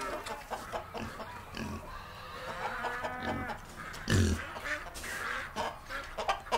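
Farm animal calls, a sound-effect montage of livestock, with a louder low call about four seconds in.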